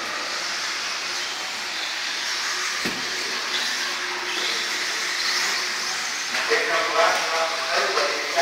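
Electric 1/10-scale RC buggies racing on an indoor dirt track: a steady high whine and hiss of motors, gears and tyres, with a single knock about three seconds in.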